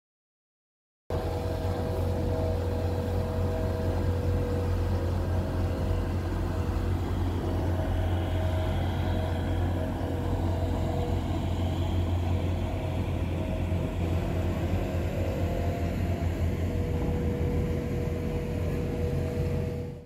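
A small passenger boat's engine running steadily close by, a low drone with a steady higher hum over it. It starts suddenly about a second in.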